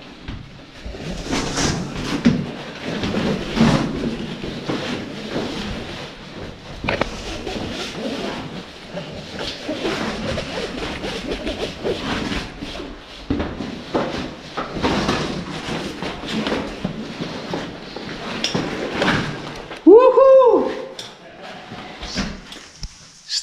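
Rustling clothing and clinks and knocks of caving rope gear (descender, karabiners) as a caver handles a rope at the head of a shaft, with indistinct voices. About 20 seconds in, a brief loud pitched sound rises and falls.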